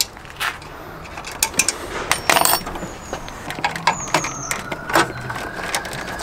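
Scattered metallic clicks and clinks of hand tools and bolts being worked in a car's engine bay, in irregular single knocks with a few close together about two seconds in.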